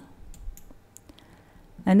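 A few faint computer mouse clicks, advancing a presentation slide, in a pause between speech; a voice starts again near the end.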